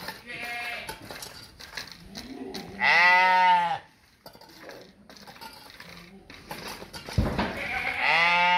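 Young Turkish dumba (fat-tailed sheep) ram lamb bleating: one loud bleat about a second long, around three seconds in, and another starting right at the end.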